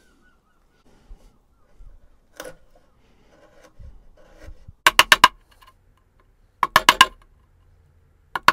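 Hand chisel working the edges of a mortise in a wooden board: a few faint scraping and paring sounds, then two quick runs of about four sharp taps, the second about two seconds after the first.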